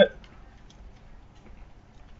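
A man's word ends right at the start, then quiet room tone with a few faint, light ticks scattered through the pause.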